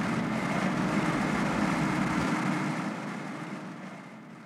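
Steady background rumble and hiss of an outdoor location recording with no one speaking. The deepest rumble drops away a little past halfway, and the noise then fades out.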